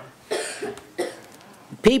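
A person coughing twice: two short, rough bursts about half a second apart, before speech resumes near the end.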